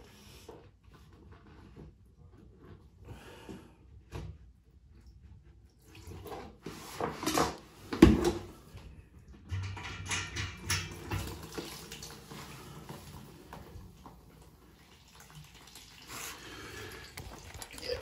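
Water draining from a towel radiator's opened valve fitting, trickling and splashing into a plastic bowl as the radiator empties. A sharp knock comes about eight seconds in.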